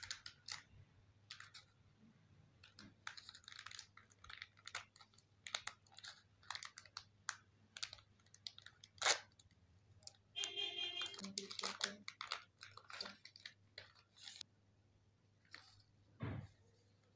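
Plastic packaging of a manicure set being handled and opened by hand: faint, irregular crinkles, clicks and rustles.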